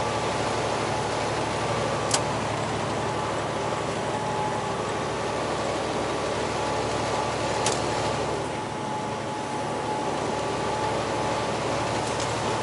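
Steady engine and road noise inside a semi-truck cab cruising on the highway. Two short clicks come through, one about two seconds in and another near eight seconds.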